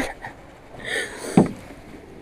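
A single dull knock about a second and a half in, from a person moving about in a small aluminium jon boat, just after a short spoken word.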